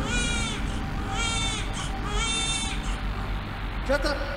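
Three drawn-out animal calls about a second apart, each harsh and half a second long with a slight rise and fall in pitch, over a low steady rumble.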